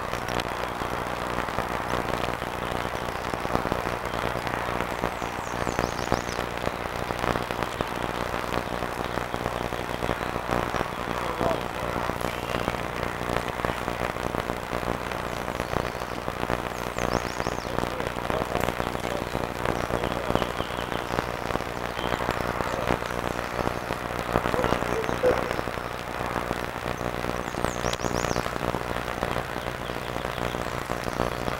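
Steady hiss with an electrical hum and crackle, typical of the audio track of an old analog camcorder; no single event stands out.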